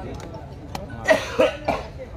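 A person coughing three times in quick succession about a second in, preceded by a few faint sharp clicks.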